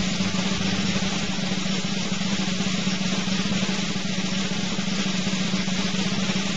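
Steady snare drum roll that keeps going at an even level with no break, a suspense cue while the votes are counted.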